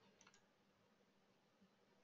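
Near silence, with two or three very faint clicks shortly after the start.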